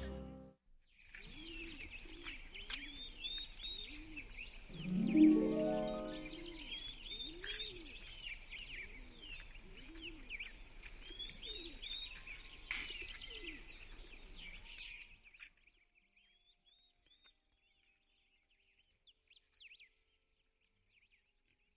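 The song's last note dies away in the first second. Then small birds chirp and twitter, with low, repeated cooing calls underneath and one louder rising call about five seconds in. Near the end the birdsong mostly drops out, leaving a few faint chirps.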